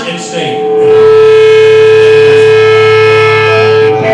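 Electric guitar feedback through the amplifier: one loud, long, steady held tone that starts about half a second in.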